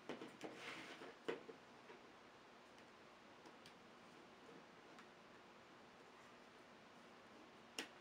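Faint clicks and ticks of fused plastic bead panels being handled and fitted together at their interlocking edges, with a sharper click just over a second in and another near the end; otherwise near silence.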